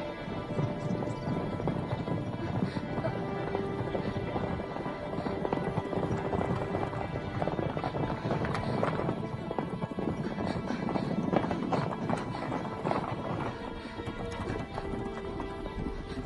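Horses' hooves galloping on dry ground, a dense run of hoofbeats, over background film music.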